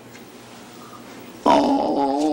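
A drawn-out vocal groan of dismay starts suddenly about one and a half seconds in after a quiet stretch and is held on one slightly falling note.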